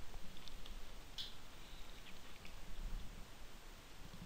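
A few faint, scattered clicks of a computer mouse and keyboard being worked, over low room noise.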